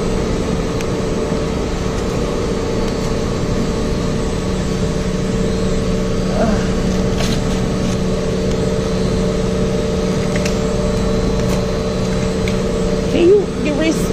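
Steady hum of a walk-in produce cooler's refrigeration and fans, a few constant tones over an even rush of air.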